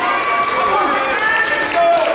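Spectators and team members at a wrestling match talking and calling out over one another, several voices at once.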